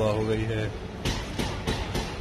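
A short voiced sound at the start, then a few light clinks of tableware (glasses and cutlery) about a second in.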